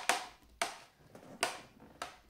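A metal fork clicking and scraping against a serving tray while picking through pumpkin pulp and seeds: three sharp taps spread over two seconds.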